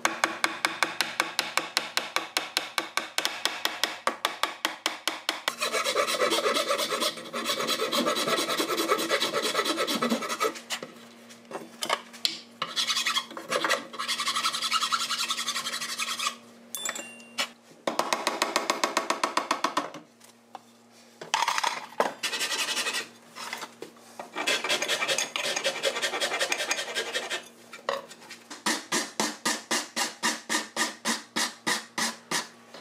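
Hand file scraping across a hickory buggy pole held in a vise, in runs of quick back-and-forth strokes broken by short pauses as the wood is shaped.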